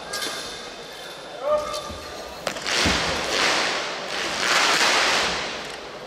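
Sounds of a wushu monkey-staff routine on a carpeted competition floor in a large, echoing hall: sharp knocks and a low thud about two and a half seconds in, followed by two long swells of rushing noise.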